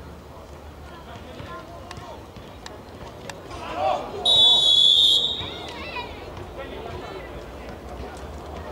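A referee's whistle blown in one steady, loud blast lasting about a second, a little over four seconds in, just after a shout. Players' calls and a few sharp ball kicks sound around it.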